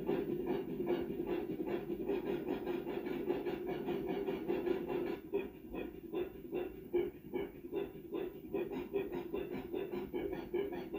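Rapid, rhythmic panting, about five breaths a second, over a steady hum.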